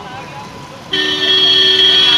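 A vehicle horn sounds suddenly about a second in and holds as one loud, steady two-note blast over street noise.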